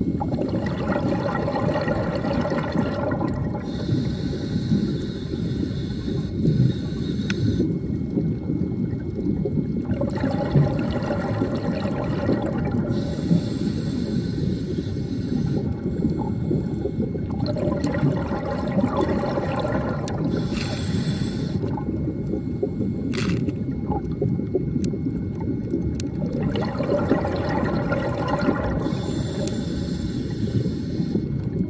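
Underwater recording of a scuba diver breathing through a regulator: a steady low rumble of water. Every few seconds a high hiss alternates with a bubbly, gurgling exhalation.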